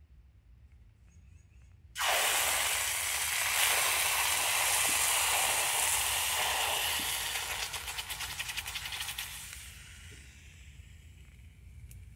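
Hot aluminum casting quenched in a bucket of water: a sudden loud steam hiss begins about two seconds in, with rapid crackling of boiling water near its later part, then dies away over the last few seconds.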